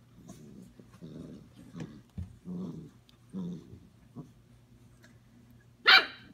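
Five-week-old European basset hound puppies play-fighting: a few short, low puppy growls about a second apart, then a sudden loud, sharp cry near the end.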